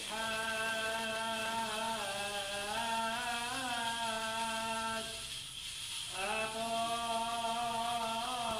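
Syriac liturgical chant sung by a single voice on long held notes with ornamented turns. It breaks off for about a second a little past the middle, then resumes.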